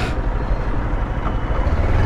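Motorcycle engine running with a low, steady rumble, getting stronger near the end as the bike pulls away.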